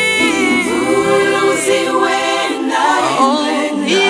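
Women singing a Kikongo gospel hymn in several voices, unaccompanied once the sustained instrumental notes fade out in the first second.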